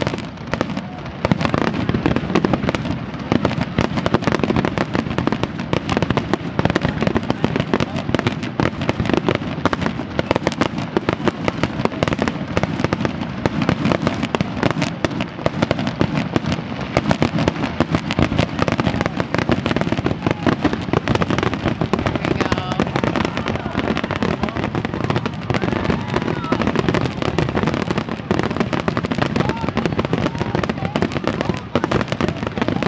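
Fireworks finale barrage: aerial shells bursting in rapid, overlapping succession, many bangs a second without a break.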